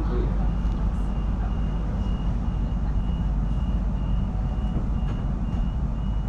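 Cabin sound inside an electric suburban passenger train under way: a steady low rumble of the carriage running on the rails. A faint high tone pulses over it about two to three times a second.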